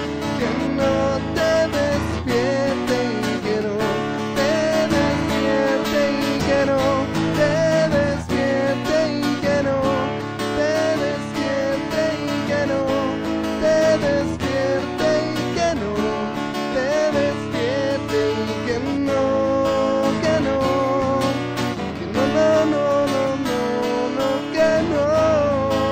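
Live acoustic band music: strummed acoustic guitars playing chords, with a wavering higher melody line over them.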